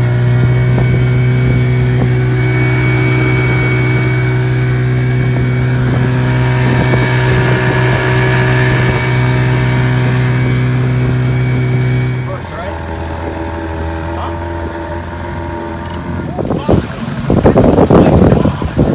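Small outboard motor pushing an aluminium jon boat, running at a steady higher speed after being put in gear. About twelve seconds in it is throttled back to a lower, quieter idle. Voices and loud peaks come in over it near the end.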